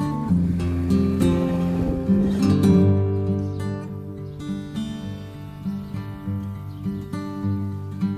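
Background music played on acoustic guitar, one held note after another.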